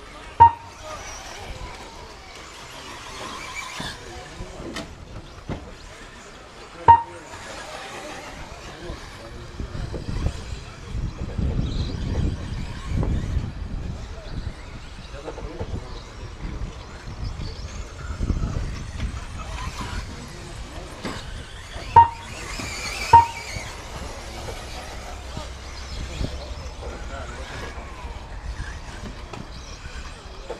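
Steady race-track background with a low rumble that swells through the middle, broken by four short, sharp, high beeps: one right at the start, one about seven seconds in, and two close together a little past twenty seconds.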